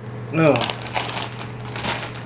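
Foil potato chip bag crinkling as it is handled and set down, with a few sharp rustles, the loudest near the end.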